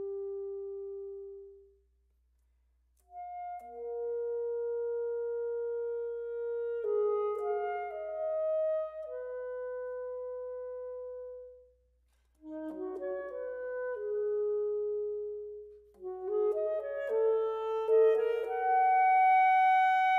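Solo alto saxophone playing a slow melody in separate phrases: a long held note that fades out, a pause of about a second, then held notes and quick runs, another brief pause, and a louder ending on a high sustained note.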